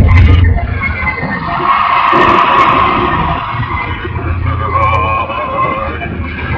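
Metal-style cover song playing, with long held, wavering notes over a heavy low end.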